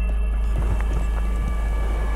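A steady low rumble of wind buffeting the microphone, under faint background music.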